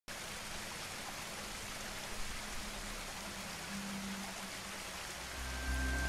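Steady hiss of running water, with low, steady music tones fading in near the end.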